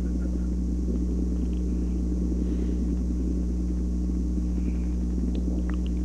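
Steady mains hum with hiss on an old telephone-line tape recording, running unchanged through the pause in the conversation.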